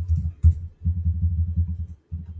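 Rapid typing on a laptop keyboard (Dell XPS 13), heard as dull low thumps about eight to ten a second in short runs, with one sharper click about half a second in.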